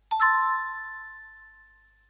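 A single bell-like chord struck just after the start, several clear pitches ringing together and fading away over nearly two seconds: a closing chime of the outro music.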